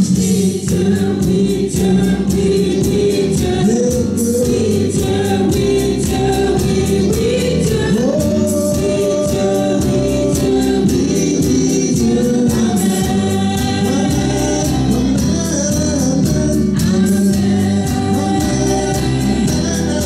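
Gospel praise song sung through microphones by a small group of male and female voices, over a keyboard accompaniment with a steady beat.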